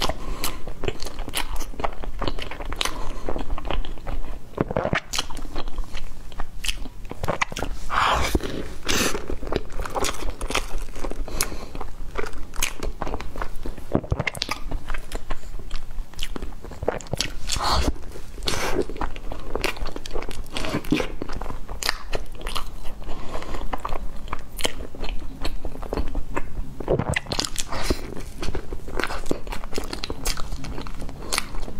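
Close-miked biting and chewing of a crusty, herb-flecked baked bread, with many crisp crunches throughout.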